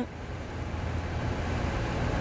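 A quiet, steady low hum: the fans of DynaTrap XL insect traps running, so quiet that they are barely noticed.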